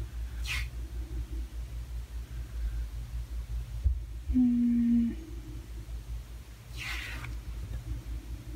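A steady low rumble of background noise. A little after four seconds in comes a short closed-mouth hummed 'mm' in a woman's voice, just after a faint tap. Two brief soft hisses fall about half a second in and near the end.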